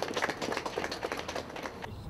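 Applause from a small crowd: a dense patter of separate hand claps.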